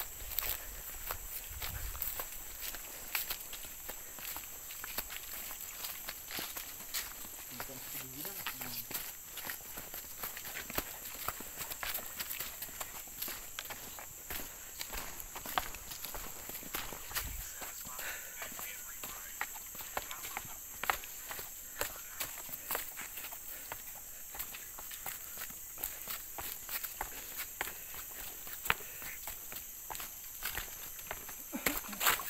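Footsteps crunching on a trail littered with dry bamboo leaves, an irregular run of small crackles and scuffs from people walking, over a steady high-pitched drone.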